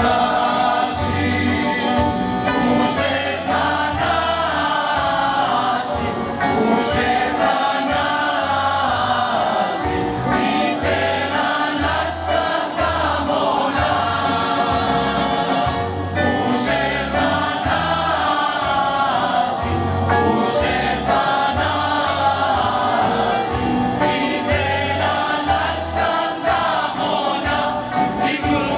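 Mixed choir of women and men singing in harmony. Accordion and a strummed plucked string instrument accompany them, keeping a steady beat under the voices.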